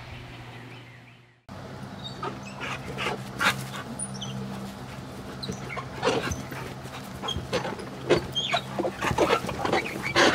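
A dog vocalizing in short bursts, several times, over a low steady hum.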